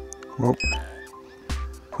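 Background music: held chords over a low bass pulse.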